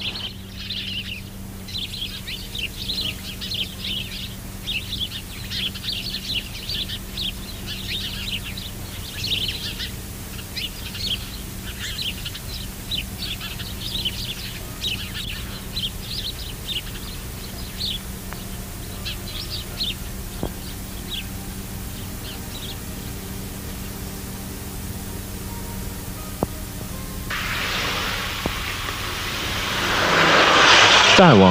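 Small birds chirping in quick, dense bursts, thinning out and stopping about two-thirds of the way through, over a steady low hum. Near the end, a road vehicle's noise swells up as it approaches.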